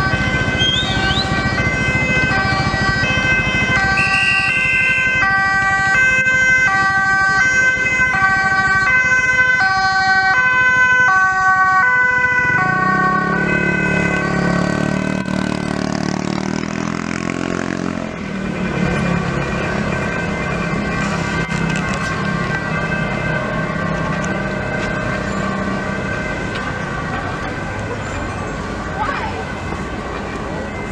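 Dutch ambulance two-tone siren sounding, alternating between a high and a low note for about the first twelve seconds, then giving way to a lower vehicle sound and street noise with voices.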